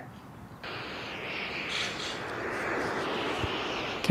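White noise played from a smartphone's speaker, starting suddenly about half a second in and growing slightly louder.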